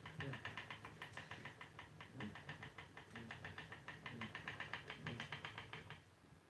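Spinning wheel running as flax is spun onto the turning bobbin and flyer, giving a faint, rapid, even ticking, several ticks a second, that stops at the end.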